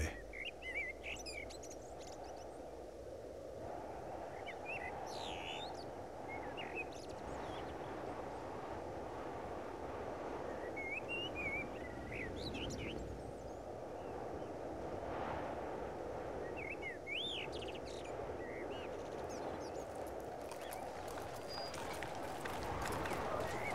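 Outdoor nature ambience: a steady low rush like wind, with small birds chirping in short scattered calls.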